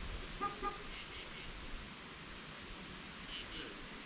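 Quiet outdoor ambience, a steady faint hiss of air, with small birds chirping faintly in quick groups of two or three notes.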